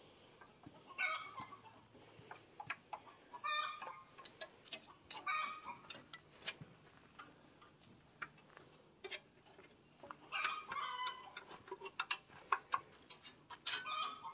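Short bursts of bird calls, several times over, with scattered light clicks and knocks in between.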